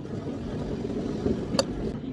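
Carbonated water poured from a can into a tall glass of ice and berry syrup, a steady pouring and fizzing, with one sharp click about one and a half seconds in.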